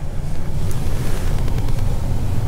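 Rumbling, rustling handling noise on the camera's microphone as the camera is moved and turned downward.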